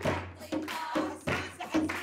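Hand clapping in a steady rhythm, about two claps a second, with singing over it: clapping along to a song at a party.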